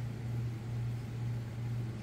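A steady low hum with a faint hiss beneath it, unchanging throughout, with no distinct event.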